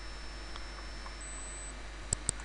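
Steady background hiss with a low electrical hum, and a faint high-pitched whine that jumps higher in pitch about a second in, then stops.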